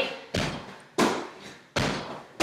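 Feet in athletic shoes landing on a hardwood floor during repeated jumps: three thuds about two-thirds of a second apart, each trailing off in the room's echo.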